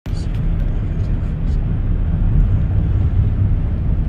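Steady low rumble of a car moving along the road: tyre, engine and wind noise heard from inside the car.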